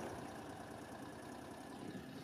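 Faint, steady running of an Argo Frontier 8x8 amphibious vehicle's engine as it drives through mud.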